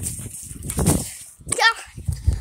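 Rumbling, rustling handling noise on a phone's microphone as it is carried at a rush, followed about a second and a half in by a short high-pitched vocal sound.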